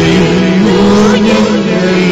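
Devotional chant-style singing: a voice holding and bending notes over a steady, sustained accompaniment.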